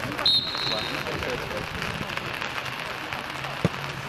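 Referee's whistle, one short blast, signalling a penalty kick to be taken; about three seconds later a single sharp thud of a boot striking the soccer ball.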